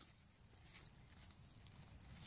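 Near silence: faint outdoor background hiss between remarks.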